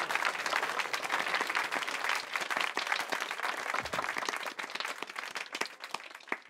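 A small group applauding, the clapping slowly dying away.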